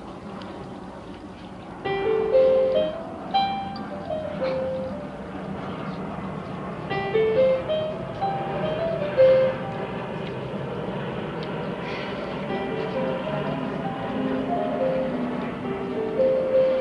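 A Kawai digital piano and a small drum kit playing a piece together. The piano melody comes in about two seconds in, over the drums.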